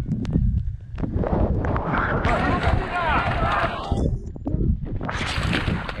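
Rough action-camera sound of trail runners racing through water: splashing and wind buffeting the microphone, with voices shouting about two to three seconds in.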